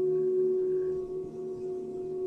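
A steady drone tone held at one pitch with faint overtones, unchanging throughout, heard as a continuous background layer.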